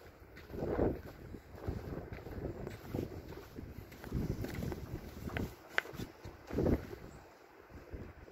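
Wind buffeting the phone's microphone in uneven gusts, rising and falling every second or so, with a brief click about six seconds in.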